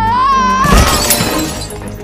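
A loud crash of something smashing and breaking about two-thirds of a second in, over orchestral film score whose wavering high melody cuts off at the crash.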